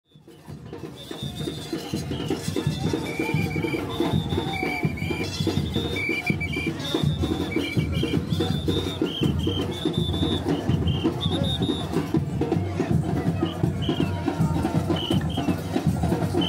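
Carnival percussion band drumming a dense, fast beat on bass drums and other drums, with a short high two-note figure repeating over it. The sound fades in over the first two seconds.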